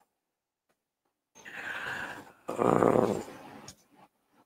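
A man clearing his throat: a rasping sound that starts about a second in, breaks briefly and comes back louder and lower, then stops shortly before the end.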